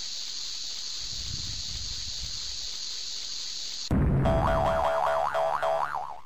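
Cartoon logo sound effects for an animated bomb: a lit fuse hissing steadily for about four seconds, then a sudden loud bang. A warbling tone follows, wobbling up and down about four times a second, and stops near the end.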